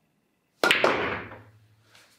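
Pool shot: the cue tip strikes the cue ball with a sharp click, a second click follows a moment later as ball hits ball, then the balls roll across the cloth, dying away over about a second.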